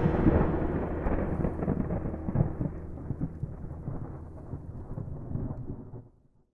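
Rolling thunder from a thunderclap, rumbling and slowly fading away with a rain-like hiss before it stops.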